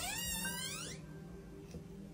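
A door creaking as it swings open, a gliding, bending squeal over about the first second, followed by a faint steady low tone.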